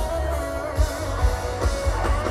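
Live rock band playing an instrumental passage: electric guitar over bass and drums, with sustained notes and regular drum hits.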